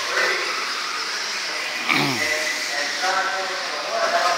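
Electric 1/10-scale stock-class RC buggies running on a dirt track, their motors whining and changing pitch over a steady hiss. About two seconds in, one motor's whine drops steeply in pitch as a car slows.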